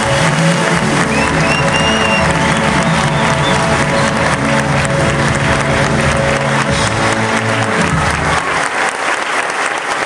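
Audience applauding over loud music, with the music's low notes stopping about eight seconds in and leaving the applause.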